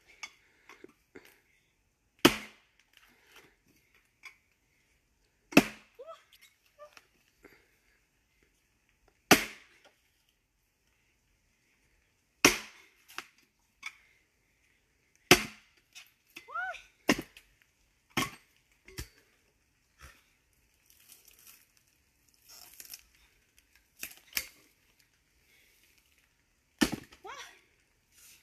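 Axe blows splitting a log, each a sharp wooden crack. The loudest come roughly every three seconds, with lighter knocks in between and a quicker run of blows a little past the middle.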